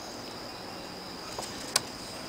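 Crickets chirping steadily in the background, a thin high-pitched trill, with one sharp click near the end.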